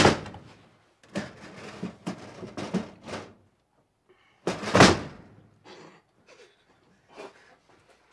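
Thumps and knocks with rustling from someone moving about a small room, with a sharp impact at the start and the loudest thump about five seconds in.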